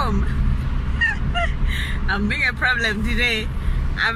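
A woman talking inside a car, over the steady low rumble of the car's cabin noise.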